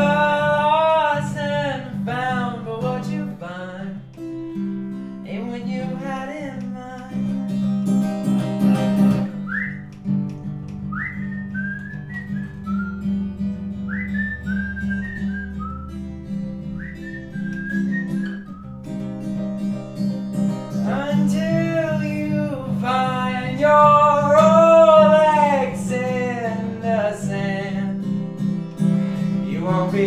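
Male voice singing over his own acoustic guitar. In the middle stretch the singing stops and a whistled melody of short rising notes plays over the guitar before the singing returns.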